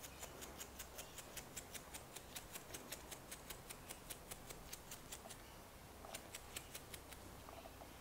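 Bristles of a half-inch chip brush flicked with a thumb to spatter alcohol-thinned makeup, making faint, quick ticks about five a second. The ticks pause briefly, then a few more come near the end.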